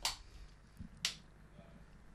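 Two faint, sharp clicks about a second apart over quiet background.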